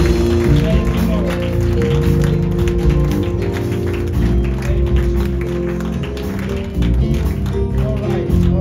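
Live church band music: sustained chords over a strong bass line, with short sharp claps or taps mixed through it.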